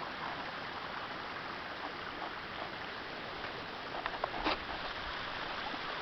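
Steady rush of distant mountain streams, an even hiss of running water. A soft bump comes about four and a half seconds in.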